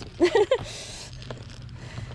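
A short voice sound just after the start, then a brief hissing rustle under a second in, as plush toys are handled and squeezed in a plastic bin. No squeak is heard.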